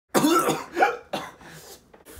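A man coughing and clearing his throat in three bursts, the first the longest and loudest.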